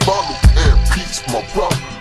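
Chopped-and-screwed hip hop track, slowed down, with rapping over deep bass and kick drum hits.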